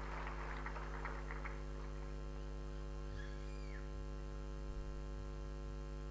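Steady electrical mains hum from the public-address sound system, holding one even pitch with many overtones. Faint scattered clicks die away in the first second and a half.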